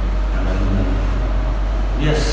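A steady low hum under faint, indistinct male speech in a room.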